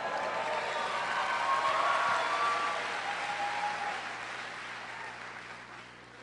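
Audience applauding, dying away over the last couple of seconds.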